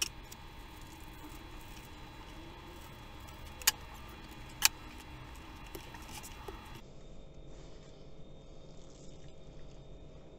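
Faint crinkling and rustling of plastic cling film being cut and peeled off a wrapped fish, with two sharp clicks about a second apart near the middle.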